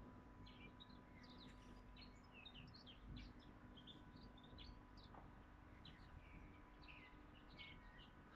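Faint, scattered birdsong: many short chirps from small birds over a quiet outdoor background.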